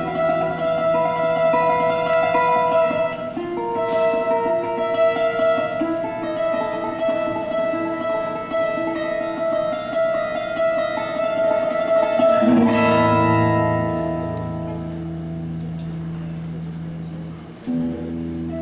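21-string harp guitar played solo: fast fingerpicked melody notes over ringing bass strings. About two-thirds of the way through a low chord is struck and left to ring out and fade, and a new note is picked just before the end.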